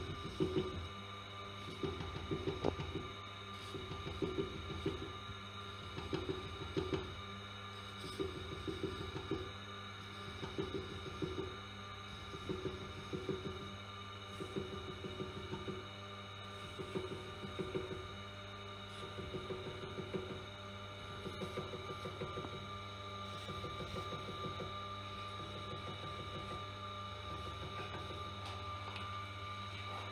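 Tormek sharpener's motor humming steadily while a serrated knife is honed on its spinning felt wheel. A short rubbing scrape repeats about once a second as the knife is rocked into the serrations.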